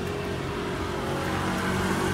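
A motor vehicle's engine running steadily, an even low hum that grows slightly louder toward the end.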